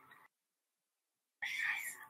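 A person's voice trails off, then dead silence for about a second, then another short burst of voice starts about one and a half seconds in.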